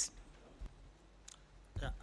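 Quiet room tone with two faint clicks about a second apart, then a man's voice begins near the end.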